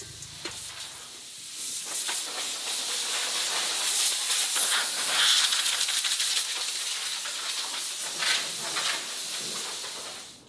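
Hand-held grinder working the car's steel roof frame down to bare metal: a steady hissing rasp that starts about a second in and stops abruptly at the end.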